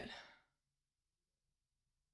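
A woman's breathy exhale trailing off about half a second in, then near silence: room tone.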